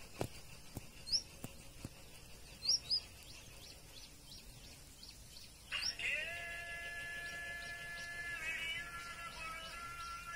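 Short, sharply rising bird chirps, several in the first half, under a faint hiss. About six seconds in, background music enters: a held chord that shifts once near the end.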